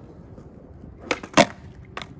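Skateboard knocking on concrete: two sharp clacks about a second in, the second the loudest, then a lighter click near the end as the tail is snapped down for an ollie.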